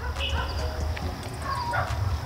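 A dog barking faintly in the distance, a few short barks, over a low rumble and a steady high insect trill.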